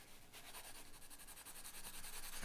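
Pencil shading on drawing paper: faint, quick back-and-forth scratching strokes in an even rhythm, starting just after the start.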